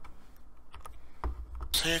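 A few faint, scattered clicks over a low rumble, then a man's voice breaking in loudly near the end.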